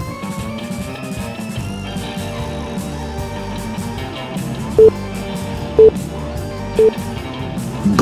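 Background rock music with electric guitar, over which three short, loud beeps sound a second apart near the end: a workout timer's countdown signalling the end of the interval.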